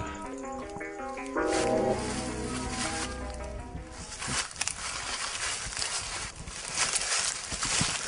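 Film score: a run of short stepped notes that swells into a held chord over a low drone, fading out after about two seconds. Then an irregular crackling rustle of dry leaves and brush, as of people pushing through undergrowth.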